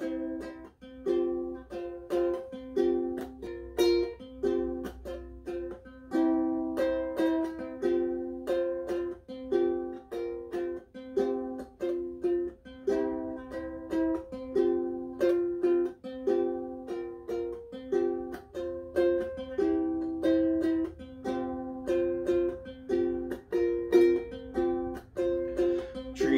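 Ukulele played solo as an instrumental introduction: a repeating pattern of plucked chords and single notes, several onsets a second.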